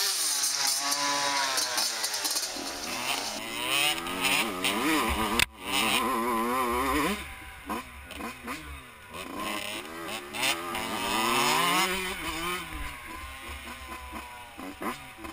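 Yamaha YZ85 and KTM 125 two-stroke dirt bike engines revving up and down under throttle, their pitch rising and falling as they ride. The sound breaks off for an instant about five and a half seconds in.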